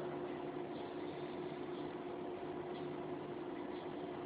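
Steady low hiss with a faint, even hum: the room tone and noise floor of the recording.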